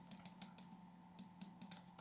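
Faint, irregular light clicks, about a dozen in two seconds, bunched near the start and again toward the end, over a low steady hum.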